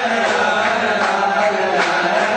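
A group of voices singing together in a steady chant.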